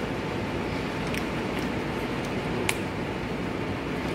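Steady fan-like room noise, with a few faint clicks as the rubber dam sheet and its metal frame are handled on a dental phantom head.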